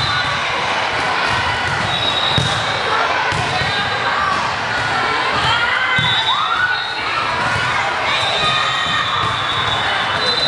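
Busy gymnasium din: balls thudding on a hardwood court again and again, under a steady chatter of children's and spectators' voices.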